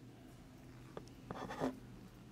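Quiet room tone broken by two small clicks about a second in, then a short scuffing rustle near the end.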